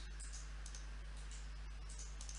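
A few faint computer mouse clicks over a steady low electrical hum and hiss.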